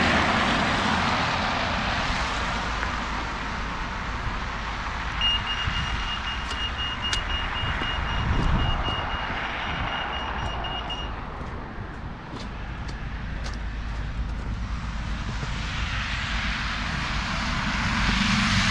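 A pedestrian crossing signal beeps with a high, steady-pitched tone for about six seconds, starting about five seconds in, while the lights are red for traffic. Under it is the hiss of tyres from cars and lorries passing on the wet, slushy road, loudest at the start and the end.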